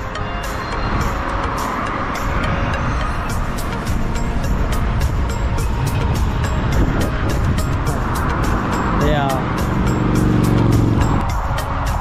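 Background music with a steady beat over road traffic noise and wind on the microphone. A vehicle engine's low drone comes in about eight seconds in and cuts off a second or so before the end.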